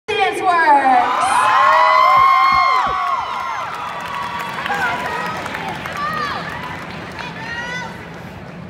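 Crowd cheering, with many overlapping high-pitched screams and whoops, loudest over the first three seconds and dying down after that.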